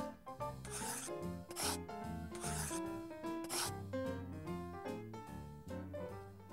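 Light background music with a scratchy pen-on-paper writing sound effect in four short strokes as letters are drawn.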